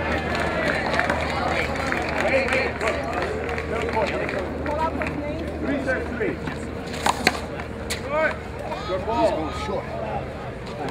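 People talking indistinctly, with two sharp knocks in quick succession about seven seconds in.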